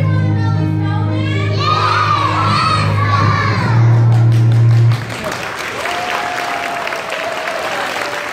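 Children's choir singing the last line of a song over a held accompaniment chord, which cuts off about five seconds in; an audience then applauds and cheers.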